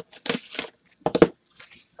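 A trading-card pack wrapper crinkling and tearing as it is pulled open by hand, in several short rustling bursts.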